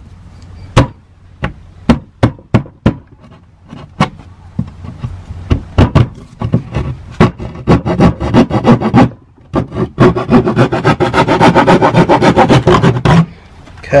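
Narrow drywall (gyproc) jab saw cutting through plywood by hand, one rasping stroke at a time. The strokes come unevenly at first, then quicker and steadier for the last few seconds as the cut-out is finished. They stop just before the end.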